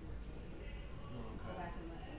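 Faint, indistinct voices talking at a distance over a steady low room hum.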